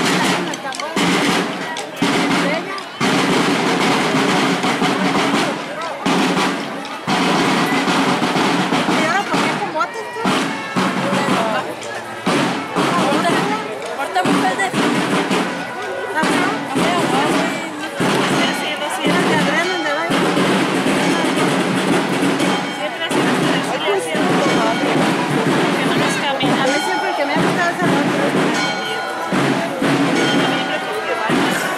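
Marching drums, snare and bass, beating under the talk of a crowd of spectators, with many sharp strokes.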